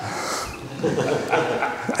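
A roomful of people laughing, rising about a second in, with a man's laugh near the end.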